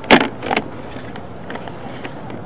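Two sharp knocks about half a second apart, the first the louder, over a steady low hum, as a sewer inspection camera's push cable is pulled back out of the line.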